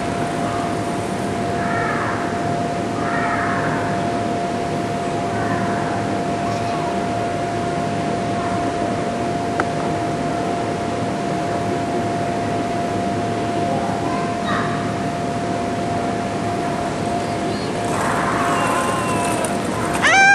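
Small wheels of a child's ride-on board rolling across a wooden gym floor, a steady rumble. A constant faint tone runs under it, and a few short vocal sounds come and go.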